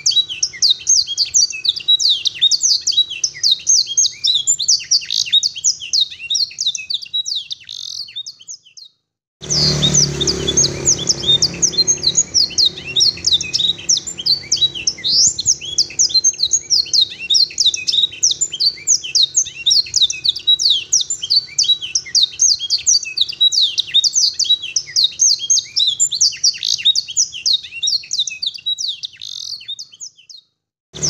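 A domestic canary singing a long, unbroken song of rapid chirps and rolling trills. It is a canary tutored with blackthroat and sanger song phrases. The song cuts off for about a second about nine seconds in, then carries on.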